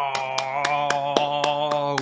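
A man's voice holding one long groan at a steady pitch. Sharp clicks come about four times a second through it, starting just after it begins.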